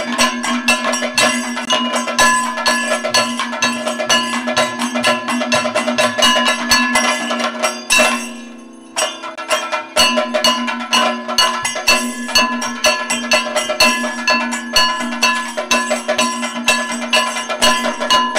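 Kathakali percussion accompaniment: rapid chenda drum strokes with ringing metal percussion over a steady low tone, easing off briefly about eight seconds in before resuming.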